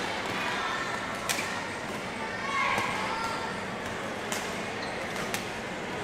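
Badminton rackets striking a shuttlecock during a doubles rally: sharp, separate hits, about three clear ones spaced a second or more apart, with voices chattering in a large hall behind them.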